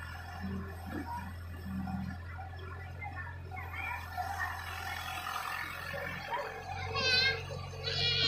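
Low, steady diesel engine hum of a Caterpillar E70 tracked excavator moving through mud, with people's voices, children's among them, in the background. Near the end come two short, wavering high-pitched calls.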